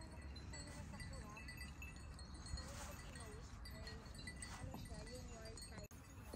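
Faint outdoor ambience: distant people talking, too far off to make out, over a steady low rumble.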